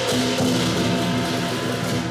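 Lion dance percussion band playing: cymbals clashing and ringing over a drum beat.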